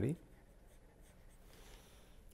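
Faint scratching of a stylus writing a word by hand on a tablet screen.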